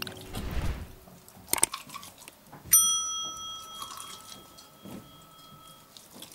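Subscribe-button notification sound effect: a click, then about a second later a single bright bell ding that rings on for about three seconds.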